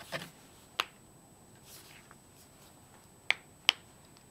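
Three sharp clicks: one just under a second in, then two about half a second apart near the end, after a brief rustle at the start.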